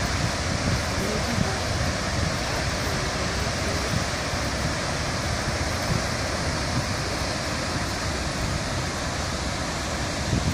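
Steady rushing noise of the Lucky Peak Dam rooster tail, a high-pressure jet of water arcing from the dam's outlet and falling as heavy spray onto the river, with gusty wind on the microphone.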